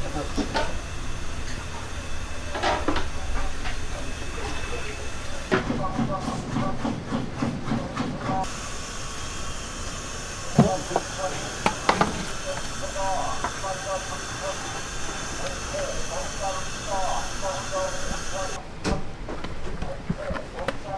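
Busy kitchen sounds: a steady hiss from a sausage steamer and two sharp knocks about ten and twelve seconds in, with voices in the background.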